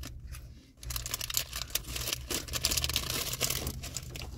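Plastic food bag crinkling and rustling as it is handled close by, a dense run of small crackles for the last three seconds.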